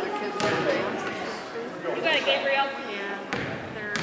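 Basketball bouncing on a hardwood gym floor: a few sharp bounces, two of them close together near the end, as the free-throw shooter dribbles before the shot. Spectators' voices echo in the gym.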